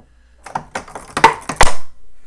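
A coin drops down a homemade wooden Plinko pegboard, clicking and clattering off the wooden pegs in a quick irregular run. The hits grow louder and end in a hard knock as it lands in a bottom slot.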